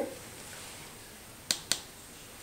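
Two light, sharp clicks about a fifth of a second apart, a little past the middle of an otherwise quiet stretch: a plastic eyeshadow palette being tapped.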